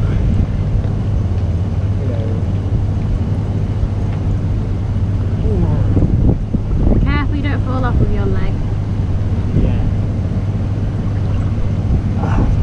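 Hot tub jets running: a steady pump-motor hum under churning, bubbling water close to the microphone. About six seconds in, a voice makes short high-pitched sounds for two or three seconds.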